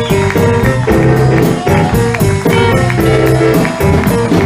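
Live electric blues band playing with a steady beat: electric guitars, Fender bass, drum kit and piano.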